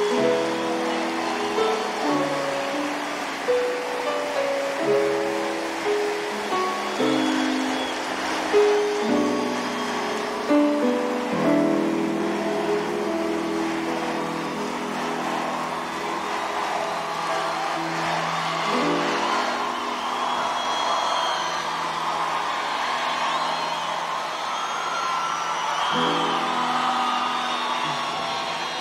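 Grand piano playing a slow ballad introduction of held chords that change every second or two, over the steady noise of a large crowd.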